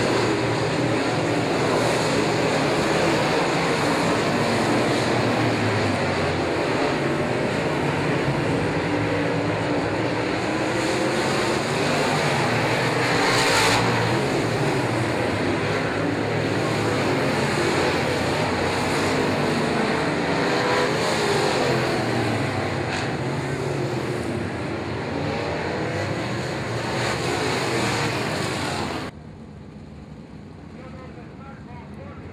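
Dirt late model race cars' V8 engines running hard as the pack laps the dirt oval, a loud steady drone whose pitch wavers as cars pass. There is a brief louder rush about halfway through, and the sound drops off sharply about a second before the end.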